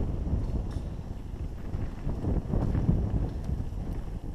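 Wind rushing over the microphone of a camera riding fast down a dirt mountain-bike trail, with a steady low rumble and a few light knocks from the bike over the rough ground.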